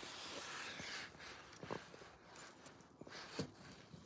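Faint handling noise from a phone being turned in the hand, with a few soft knocks.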